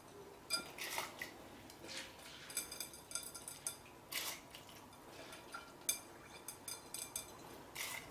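Washed rice being tipped and scraped by hand from a glass bowl into a pressure cooker: faint scattered clinks of glass against the metal pot, with a few short scraping rushes.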